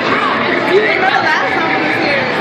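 Several voices talking over one another: loud, excited chatter with no clear words.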